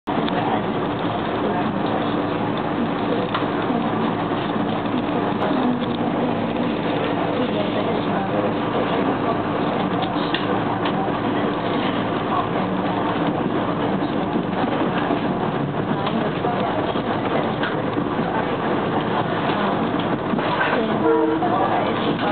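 Electric commuter train heard from inside a passenger car while running at speed: a steady rumble of wheels on the rails, with a steady hum that fades out about two-thirds of the way through.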